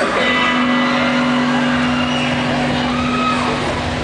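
A rock band playing loud live on a stage with guitars and drums, one low note held steady through the passage. Cheers and whoops from the crowd rise over it.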